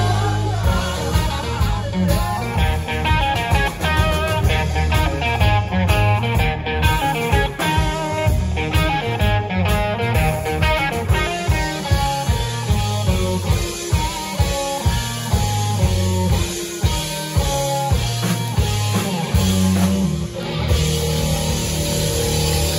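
Live rock band playing an instrumental passage on electric guitars, bass guitar and drum kit. Quick lead-guitar runs sit over a steady bass-and-drum pulse.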